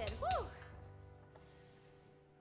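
The end of a live praise song: a last sung note rises and falls just after the start, then the acoustic guitars and band ring out and slowly fade away.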